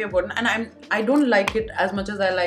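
People talking over background music with a steady thumping beat.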